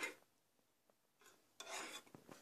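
A metal spoon scraping against a small stainless steel saucepan as a liquid is stirred. It is mostly quiet, with a brief scrape at the start and a longer one near the end.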